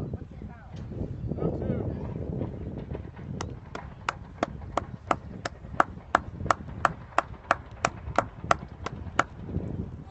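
A quick, even run of about eighteen sharp taps, roughly three a second, starting a few seconds in and stopping near the end, over a low murmur of outdoor background and distant voices.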